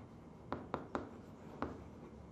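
Chalk writing on a blackboard: four short, sharp taps of the chalk against the board, three close together about half a second in and one more near the end.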